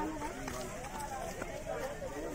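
Several people's voices talking and calling over one another, indistinct, with no clear words.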